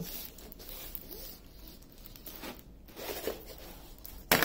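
Rolled diamond painting canvas with its plastic cover film being unrolled by hand, rustling and crackling irregularly with a few short scraping strokes.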